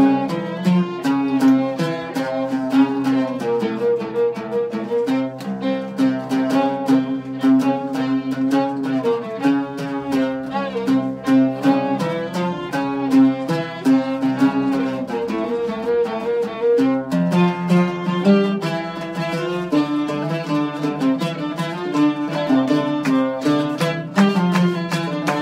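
Oud and violin playing a tune together: quick plucked oud notes under a bowed violin line, at a steady pulse.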